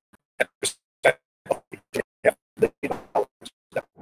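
A man's voice on a video call breaking up into short clipped fragments, several a second, with silent gaps between them. The connection is dropping out, so the speech is unintelligible and the audio is really choppy.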